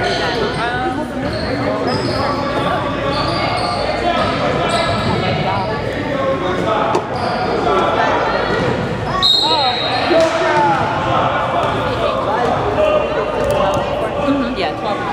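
Basketball game sounds in an echoing gym: a ball bouncing on the hardwood court under continuous talking and shouting from players and onlookers.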